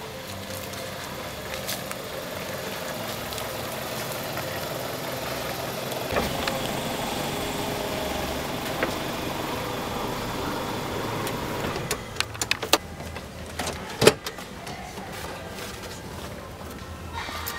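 A Toyota RAV4 running steadily as it pulls up. About twelve seconds in the running noise drops away, and a run of clicks follows, with one sharp clack about two seconds later as the driver's door is opened.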